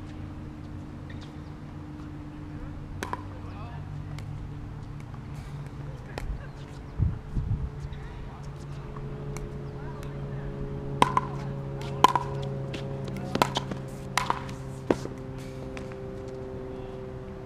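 Tennis ball struck by rackets and bouncing on a hard court: a few sharp pops early on, then a quick run of them roughly a second apart in the second half, over a steady low hum.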